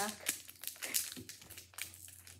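Foil Pokémon booster pack crinkling irregularly as it is squeezed and worked in a child's hands.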